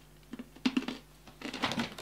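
A person chewing a mouthful of dry cornflakes close to the microphone: crisp crunching in a few short clusters of crackles.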